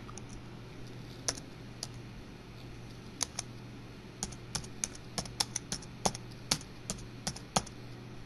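Keystrokes on a Lenovo S10-3t netbook keyboard as a search is typed: a couple of lone presses, then a quicker run of sharp clicks in the second half, over a steady low hum.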